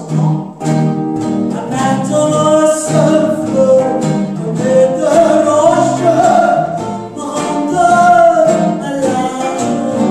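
A woman singing a gypsy-swing song with long held notes, over rhythmic strummed acoustic guitar and archtop electric guitar.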